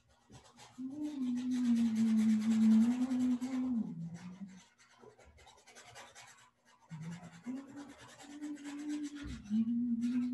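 A paintbrush rubbing and scraping across canvas in quick strokes, while a woman hums a slow tune in two long phrases, one near the start and one near the end.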